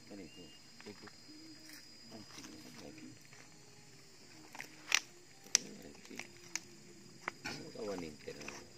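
Quiet, indistinct men's voices talking, with a faint steady high whine behind and a few sharp clicks, the loudest two about five seconds in.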